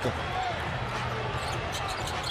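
A basketball being dribbled on a hardwood arena court, a few bounces heard over steady arena crowd noise.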